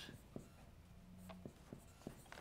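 Marker writing on a whiteboard: a few faint taps and strokes as letters are drawn.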